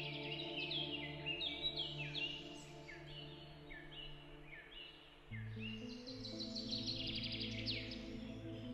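Ambient background music of sustained chords, moving to a new chord about five seconds in, with birds chirping repeatedly over it.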